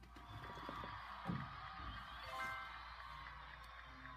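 Faint music from the Piano Maestro tablet app, with a quick rising jingle about two and a half seconds in and a soft thump about a second in.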